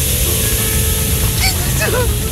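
A loud, steady spraying hiss from a sound effect over background music, with a couple of short vocal exclamations near the end.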